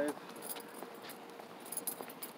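Faint light metallic jingling and clinking from small metal items carried by someone walking, with a few sharper clinks near the end.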